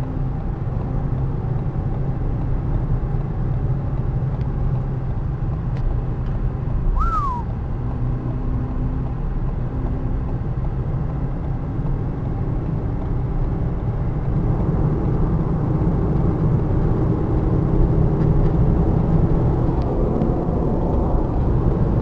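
Car interior noise at highway speed: a steady low rumble of engine and tyres on the road, growing louder in the second half. A short falling squeak about seven seconds in.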